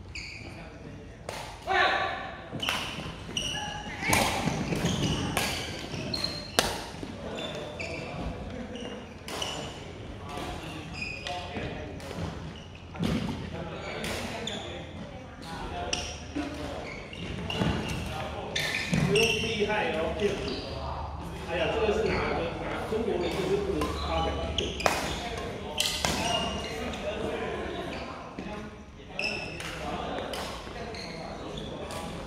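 Badminton rally in a large gym hall: repeated sharp racket strikes on the shuttlecock, about one a second, echoing, with people's voices in between.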